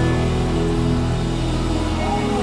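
Live worship band playing soft, held chords over a low sustained bass.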